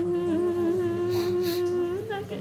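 A woman's voice holding one long, steady note of a nyidau, the Dayak Kenyah sung lament of grief for the dead, wavering only slightly in pitch.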